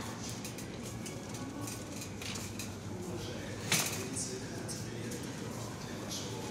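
Supermarket hall background noise with faint distant voices, and one sharp clatter about three and a half seconds in.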